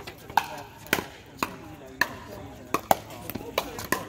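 Pickleball paddles striking a hard plastic ball during a rally: about eight sharp pops, unevenly spaced.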